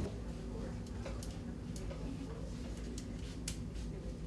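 A few short, sharp clicks and ticks from hands handling thin metal tabbing ribbon and small tools over a solar cell, over a steady low room hum.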